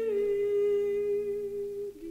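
A soprano holding one long, steady sung note that dips slightly in pitch at the start and ends just before the close, with a low harp note ringing beneath it.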